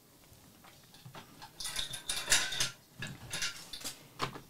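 Irregular runs of small clicks and rattles from objects being handled close to the microphone. They start about one and a half seconds in and come in uneven clusters until near the end.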